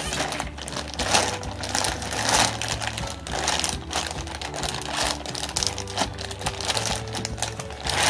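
Plastic zip-top freezer bag crinkling in irregular rustles as its seal is pulled open by hand, over background music.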